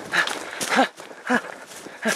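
A person running on foot through woodland: footfalls on leaf litter and panting breaths or grunts, about one every half second.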